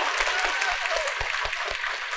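Studio audience applauding: a dense patter of many hands clapping, fading slightly toward the end.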